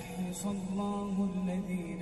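An Arabic nasheed: voices singing long, drawn-out notes over a steady low drone.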